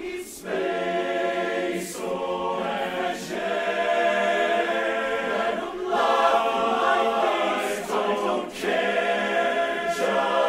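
Men's barbershop chorus singing a cappella in close four-part harmony, holding long chords with brief breaks between phrases.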